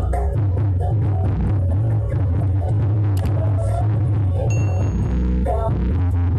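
Bass-heavy dance remix played loud through a large street-carnival sound system, dominated by a steady, heavy deep bass with a beat on top.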